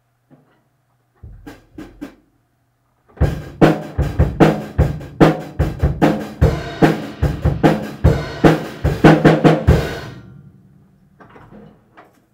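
Drum kit played by hand: a few scattered hits, then about seven seconds of a steady, loud beat on the drums and cymbals. The beat rings out and dies away, followed by a few soft hits near the end.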